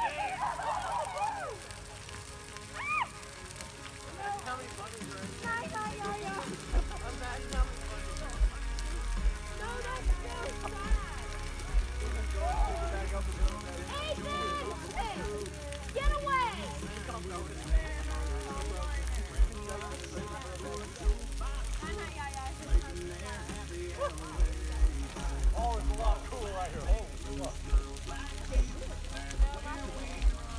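A large bonfire burning, with people's voices in the background. About seven seconds in, music with a deep, pulsing bass line comes in and carries on.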